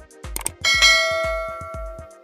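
A sharp click, then a bright bell-like notification chime that rings and slowly fades: the sound effect of a subscribe-and-bell animation. It plays over electronic background music with a steady thumping beat.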